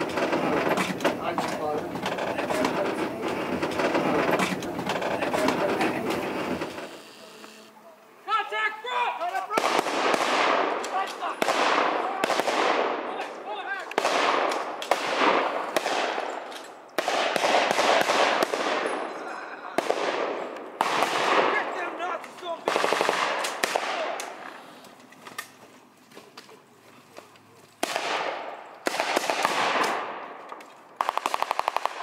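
Blank-firing WWII-style rifles and machine guns in a reenactment skirmish: repeated bursts of rapid gunfire a second or two long, starting about ten seconds in, some in long rapid strings. Before that, a low steady rumble from the moving trolley car.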